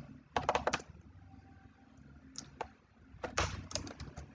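Computer keyboard keystrokes in short bursts: a quick run of clicks near the start, two more around two and a half seconds in, and another run near the end.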